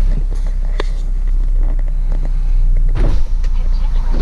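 Steady low rumble inside a BMW 4 Series convertible's cabin, with a few light clicks and a burst of mechanical noise starting about three seconds in.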